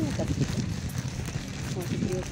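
A woman's voice says a short word at the start and another near the end, over a steady low rumble of wind and handling noise on a handheld microphone carried at a walk.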